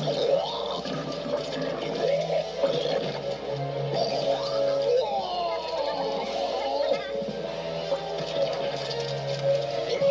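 Cartoon soundtrack played through computer speakers: music with voices over it.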